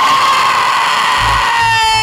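A woman screaming: one long, loud, high scream held steady, its pitch sagging near the end.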